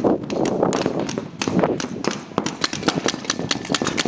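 Paintball markers firing in quick, irregular strings of sharp pops, several shots a second.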